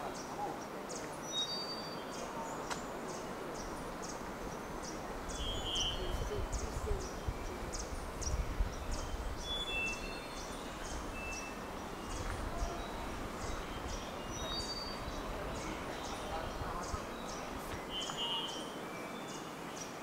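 Cloud-forest ambience with birds calling: a steady run of short, high chips, about two or three a second, and a few brief whistled notes. A low rumble runs through the middle for several seconds.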